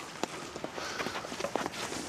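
Many hurleys tapping sliotars in an irregular scatter of light knocks as a group of players bounce the ball off the ground and tap it up into the hand, with footsteps shuffling as they move around.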